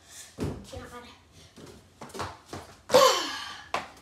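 Short thumps of feet jumping and landing on a floor, then a boy's loud exclamation falling in pitch about three seconds in.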